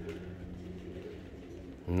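Domestic high-flyer pigeons cooing, low and soft, during a pause in speech.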